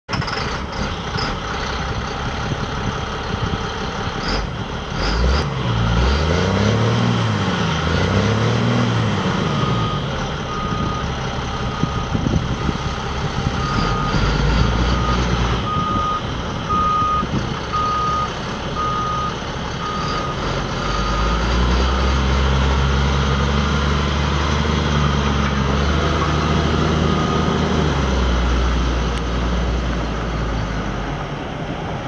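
A GMC medium-duty cab-and-chassis truck's engine running. It is revved up and down twice a few seconds in. A reversing beeper then sounds about once a second for a stretch in the middle, and the engine pulls harder and steadier near the end as the truck drives off.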